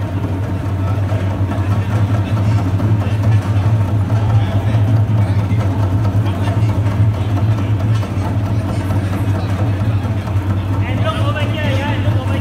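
A drum ensemble played lightly and without stopping, its rapid beats blending into a steady low rumble.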